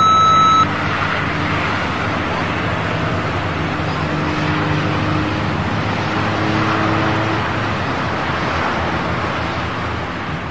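A short steady high beep, then a steady rushing noise with a faint low hum underneath.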